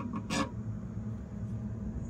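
Quiet pause with a low, steady room hum and one short sharp noise about half a second in.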